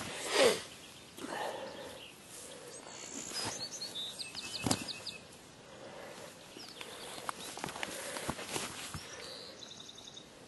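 Rustling and scuffing in dry grass as a dead hog is rolled over and handled, with a few sharp knocks and a brief louder sound just after the start. A short, high ticking trill sounds in the background about midway.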